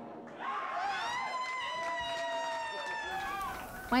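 Voices yelling and whooping after live band music, one high yell held for about three seconds with shorter calls over it.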